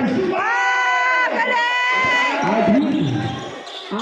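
Two long, high, held shouts from the crowd, the first sliding up into its note, over general crowd noise.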